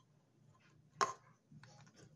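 A single sharp tap about a second in, from a small plastic bottle and a wooden chopstick being handled, with a few faint small handling sounds near the end.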